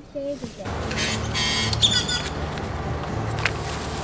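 Roadside street noise: a steady hum of traffic with voices in the background, and a brief high chirp or squeak near the middle.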